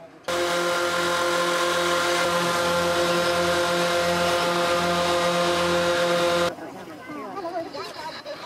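Hot-air balloon ground inflation: a loud, steady roar with a droning hum underneath, from a burner and inflator fan, lasting about six seconds and starting and stopping abruptly.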